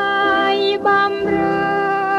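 A woman's voice singing a slow Thai song, holding long notes with a wavering vibrato over a band's accompaniment.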